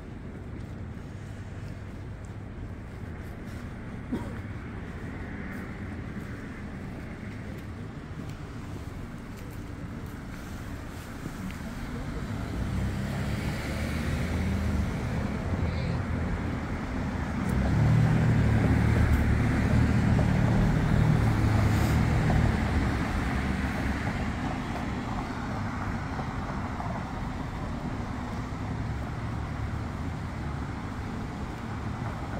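Street traffic noise, with a car approaching and passing close by, its engine and tyres growing louder to a peak about two-thirds of the way through and then fading away.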